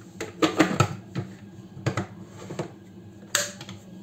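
Plastic lid of a Cecotec Mambo kitchen robot being fitted and locked onto its stainless-steel jug: a series of clicks and knocks, the loudest a little before the end.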